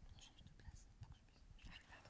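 Near silence, with faint whispering and a few small soft clicks.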